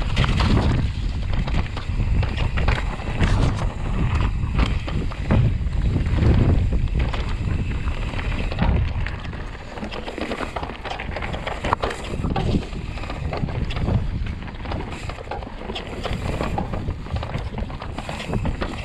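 Mountain bike ridden down rough dirt singletrack: tyres rolling over dirt and roots with frequent rattles and knocks from the bike, under steady wind rumble on the camera microphone. It gets a little quieter about halfway through.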